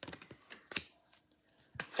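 Stiff printed quote cards being handled: a quick run of light clicks and taps at the start, a sharper tap a little under a second in, and another just before the end.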